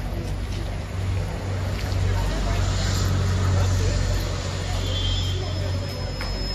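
A low, steady engine-like rumble that swells about a second in and eases near the end, with faint voices around it.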